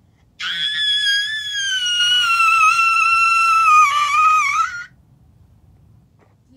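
A girl's long, high-pitched scream, starting about half a second in and held for over four seconds, its pitch slowly sinking and wavering near the end before it stops.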